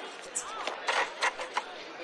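A woman laughing in a few short, breathy bursts about a second in, over faint background sound from a film.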